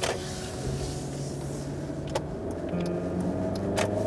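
A car driving on a highway, heard from inside the cabin: steady road and engine noise. Soft held musical notes sound over it, and there are three sharp clicks.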